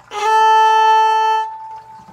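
Viola bowing a single steady A on its A string, held for about a second and a quarter and then left ringing. The stroke is taken after a bow lift, the bow picked up and set back to its starting point for a second stroke in the same direction.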